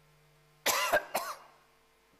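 A man coughs twice in quick succession, about half a second apart.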